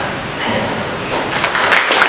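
Audience applause in a hall, swelling about a second in as many hands clap at once.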